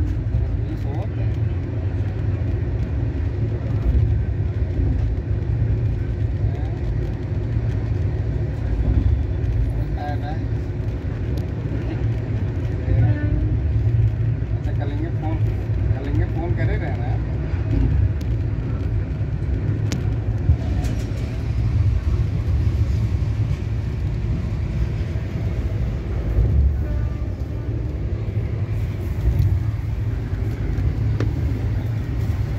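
Passenger train running at speed, heard from inside the coach: a steady low rumble, with faint passenger voices in the background.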